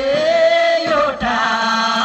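Voices singing a Magar kaura folk song in long held, gliding notes, a higher line over a lower one, with faint low drum beats underneath.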